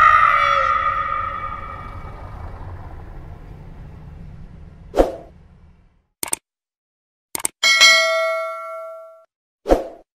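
Sound effects for an animated subscribe button: a loud ringing tone fading away over the first five seconds, a knock, then two mouse-style clicks and a bright bell chime that rings out for about a second and a half, with another knock near the end.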